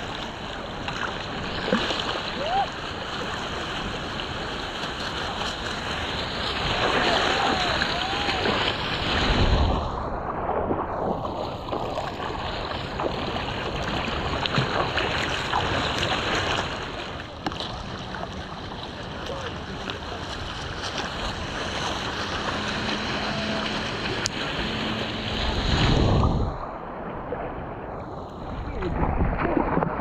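Ocean water sloshing and lapping around a surfboard, with wind buffeting the helmet-mounted action camera's microphone. Two louder rushes of water come through, one about a third of the way in and another late on.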